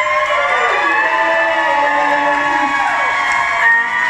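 Female and male voices singing long held notes in harmony, their pitches bending and sliding down, over acoustic guitar and keyboard in a live acoustic duet.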